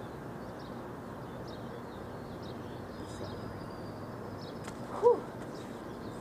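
Outdoor ambience: a steady background hiss with small birds chirping on and off. About five seconds in, one short voiced sound from a person stands out as the loudest moment.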